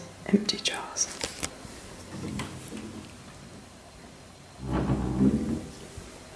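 A fabric-panelled kitchen cupboard door being pushed shut by hand, heard as about a second of rustling noise near the end, after some quiet whispering and small clicks.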